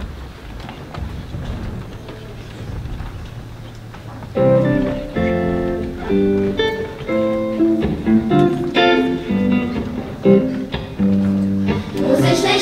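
Low hall room noise for about four seconds, then an instrumental introduction starts: a run of distinct struck or plucked notes and chords leading into a children's choir song.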